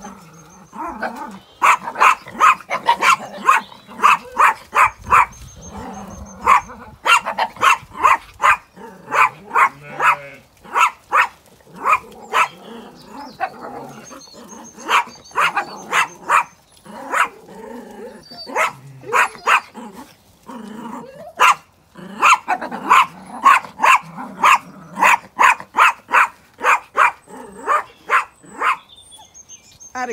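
A small dog barking in quick runs of several barks a second, broken by short pauses.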